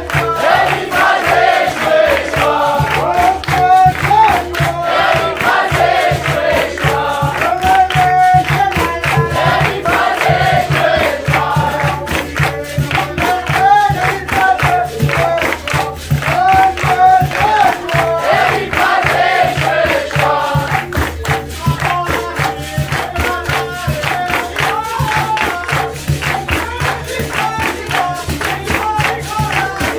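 Capoeira roda music: a group singing together over berimbaus, an atabaque hand drum and pandeiros, with the circle clapping in time.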